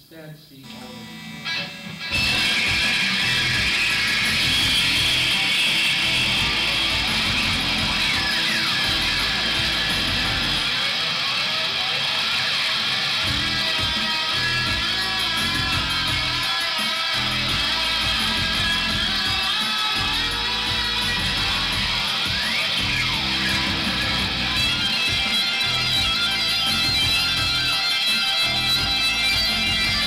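Electric guitar played live over layered loops from a loop station, coming in abruptly and loudly about two seconds in after a quiet start, then holding as a dense, steady wash with a pulsing low end.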